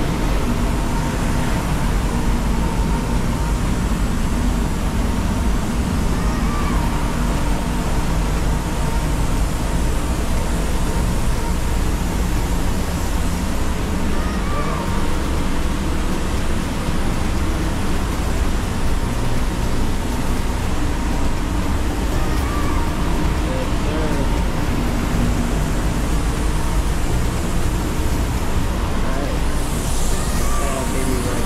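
Spray booth ventilation fans running: a loud, steady rush of moving air with a deep rumble underneath.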